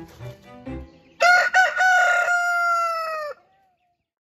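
Rooster crowing once, loudly, starting about a second in: a few short clipped notes run into one long held note that drops in pitch as it ends.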